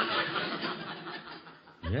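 Studio audience laughing, the laughter breaking out at once and trailing off over almost two seconds. The sound is narrow and muffled, as on an old radio broadcast recording.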